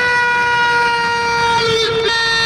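A man's voice holding one long, loud shouted note on a nearly steady pitch, a drawn-out slogan call of the kind a protest leader sounds for the crowd to answer, wavering slightly near the end.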